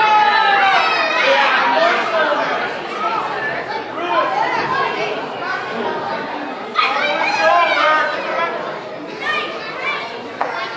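Wrestling crowd chattering and calling out, many overlapping voices, with a louder burst of shouting about seven seconds in.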